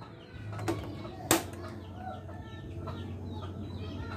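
Gas stove burner being lit, with two sharp clicks about a second in; chickens cluck faintly in the background.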